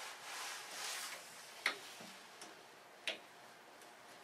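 Lever-handled zone valves on a hydronic in-floor heating manifold being turned off by hand: a soft rustle at first, then two sharp clicks as handles snap shut, with fainter ticks between and after.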